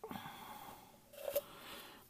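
Faint rustling of paper being worked out of a packaging tube by hand, with a small brief sound about halfway through.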